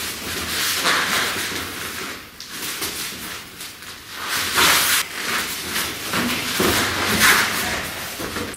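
Breathy hisses and clothing rustle from two men grappling, with one thrown down onto the mat. There are louder noisy bursts about a second in, around four and a half seconds, and again near seven seconds.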